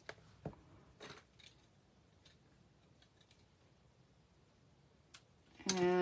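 Faint, sparse clicks and taps of small craft handling: a liquid glue bottle being dabbed onto tiny paper pieces on a work mat. The clicks come mostly in the first second and a half, with a few fainter ticks after.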